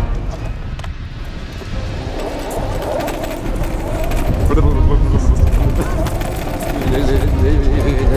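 Voices talking over background music, the voices coming in about two and a half seconds in.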